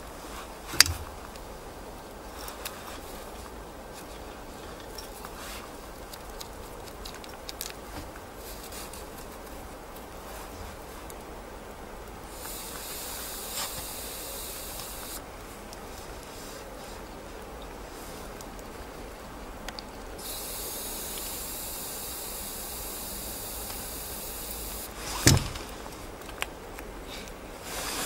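Air hissing out of a bicycle's rear tyre valve in two bursts, one of about three seconds and a longer one of about five, as the tyre is let down to widen its contact patch for grip in deep snow. A sharp knock follows near the end.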